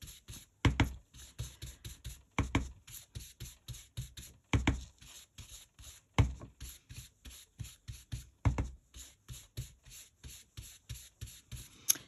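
Dome-topped stencil brush rubbing ink through a leaf stencil onto cardstock: quick, scratchy strokes about five a second, with a heavier thump every second or two.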